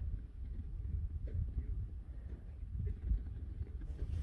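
Wind buffeting the microphone: a low, uneven rumble, with a few faint ticks through it.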